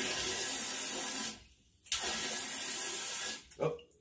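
Handheld bidet sprayer shooting a strong jet of water in two bursts of about a second and a half each, with a short break between them.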